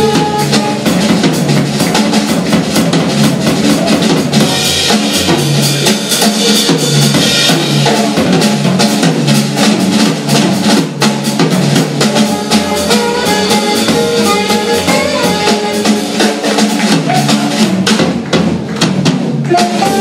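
Live jazz band playing, with the drum kit to the fore: quick snare, rimshot and bass drum strokes over double bass, piano and guitar.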